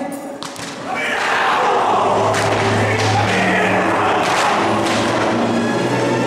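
Dull thumps at irregular intervals over music and voices.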